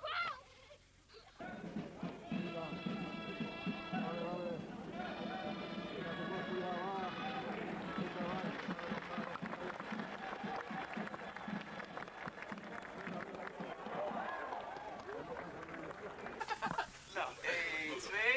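Crowd voices mixed with music, including held pitched notes a few seconds in. Near the end a cut brings in hissier audio with speech.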